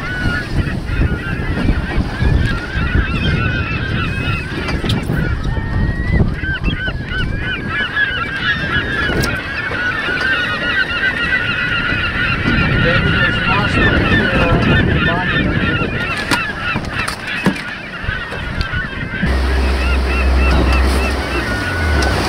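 A flock of seabirds calling over the water, many short cries overlapping at once and thickest in the middle, over wind and water noise. Near the end a boat engine's low, steady hum comes in.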